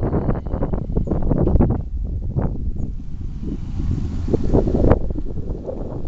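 Wind buffeting the microphone: a loud, gusting low rumble that swells and eases irregularly, strongest in the first two seconds and again just before five seconds in.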